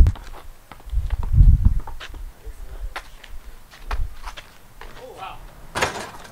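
Pickup basketball heard through a body-worn mic: scattered footsteps and knocks on a concrete driveway, with a low muffled thump about a second and a half in and a sharp smack just before the end. A short voice is heard about five seconds in.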